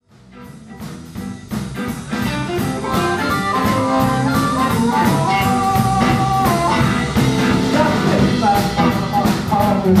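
Live blues band playing electric guitars and a drum kit. The music fades in over the first second or so, then runs at full level with a steady beat.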